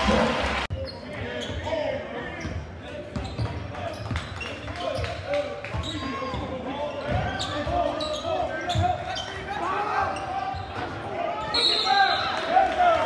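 Basketball dribbled on a hardwood gym floor, with crowd voices and shouts echoing around the gym.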